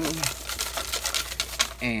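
Folded paper slips rattling and sliding around inside a cardboard box as it is shaken, a rapid, irregular run of light ticks and scrapes that stops near the end.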